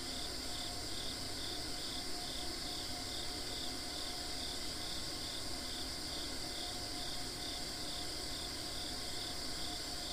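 Steady chorus of singing insects outdoors: a continuous high trill with a second, pulsing chirp repeating about twice a second.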